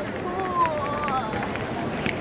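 A soft, high voice rising and falling in pitch, with no clear words, over the steady background noise of people in a busy paved square.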